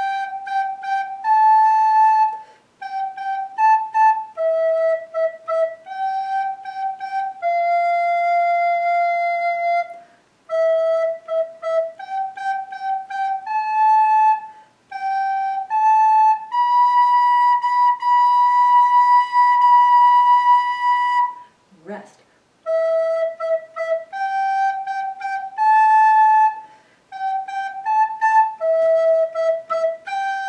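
Soprano recorder playing a slow beginner melody, note by note, around E, G and A, tongued and separated, with a few notes held for several seconds as whole notes.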